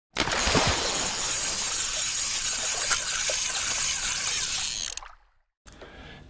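A steady rushing noise, even and hissy, with a faint click or two, that starts abruptly and dies away about five seconds in.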